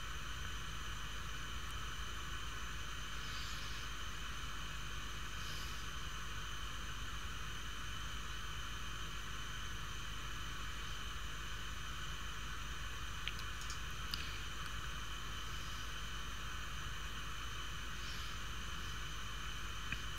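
Steady background hiss with a low electrical hum and a few faint high whines, unchanging throughout; a couple of faint ticks about two-thirds of the way through.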